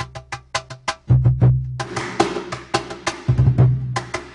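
Cajón played by hand: a quick run of sharp slaps, then a steady rhythm with deep bass tones from about a second in.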